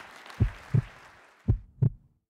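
Heartbeat sound effect in a closing logo sting: two deep double thumps (lub-dub), about a second apart, over a wash of noise that fades away.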